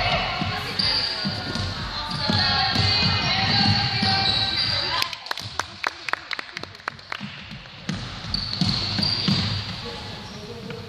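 A basketball game in a reverberant gym. Children's high-pitched voices call out with the players' movement for the first half. Then, about halfway in, a basketball bounces repeatedly on the hardwood court in a run of sharp, echoing bounces.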